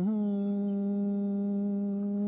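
A male dengbêj singer humming one steady held note with closed lips, a single unaccompanied voice, between phrases of a Kurdish dengbêj song.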